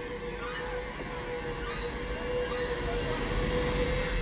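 Film score holding one long, steady note over a low, noisy wash, fading out at the very end.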